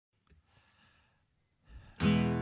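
Near silence, with a faint intake of breath near the end, just before the acoustic guitar's first strum.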